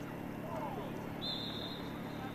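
Outdoor football pitch ambience: distant shouts of players over a low steady hum, with a faint, thin, high whistle-like tone lasting about a second from just past the middle.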